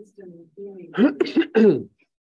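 A man clearing his throat at a table microphone: three short, loud rasps about a second in, after some faint talk.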